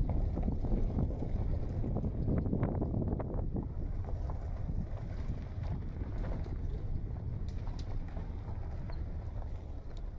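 Wind buffeting the phone's microphone with a steady low rumble, with scattered short crunches and clicks, mostly in the first few seconds.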